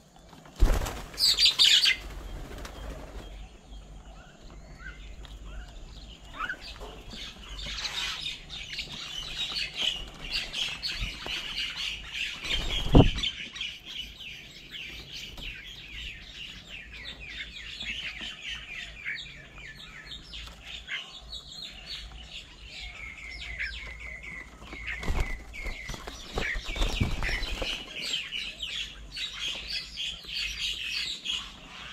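Birds' wings flapping as they land on and leave a feeding table, in loud flurries about a second in and again near the end, with a sharp thump about halfway through. Many small bird calls chirp rapidly and steadily throughout.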